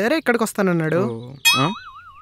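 A cartoon "boing" sound effect comes in about one and a half seconds in: a single tone that wobbles evenly up and down in pitch, fading slowly.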